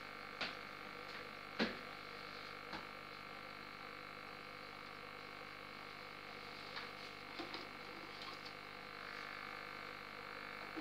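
Aquarium sponge filter and air supply running: a steady hum with bubbling, broken by a few sharp pops in the first three seconds and a cluster of softer pops and clicks later on.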